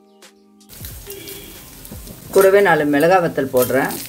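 Lentils sizzling as they roast in a stainless-steel pan, the hiss starting about a second in. A voice talks loudly over it in the second half.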